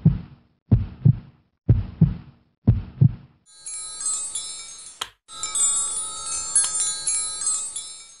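Logo-animation sound effects: four short hits about a second apart, then a bright shimmer of chime tones with a single sharp click midway through.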